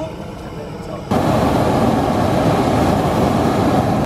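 A hot air balloon's propane burner fires about a second in and keeps burning with a loud, steady rush, heating the envelope during inflation. Before it, a steady engine hum from the inflator fan.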